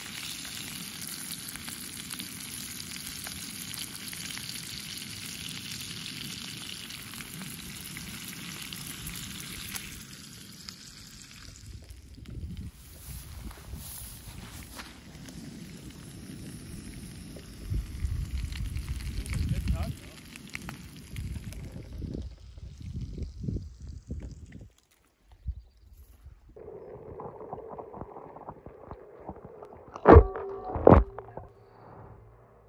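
Trout frying in butter in a pan over a canister camp stove: a steady sizzle for about the first ten seconds, which then falls away. Scattered low knocks and rumbles follow, loudest about two-thirds of the way through.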